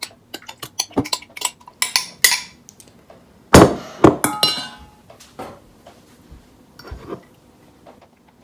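Metal spoon clinking and scraping against a glass measuring cup and a stainless steel mixing bowl as thick mayonnaise is scraped out. There is a run of quick clicks, then a loud ringing clank about three and a half seconds in and two more ringing knocks just after, followed by softer taps.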